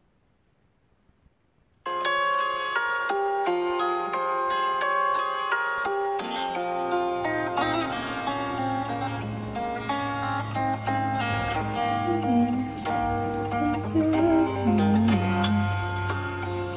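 Solo acoustic guitar played fingerstyle, plucking a melody over chords. It starts after about two seconds of silence, and a held low bass note joins underneath from about six seconds in.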